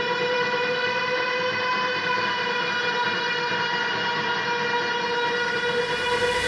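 A single steady pitched drone held unchanged within a metalcore track's intro, with a hiss swelling up under it near the end.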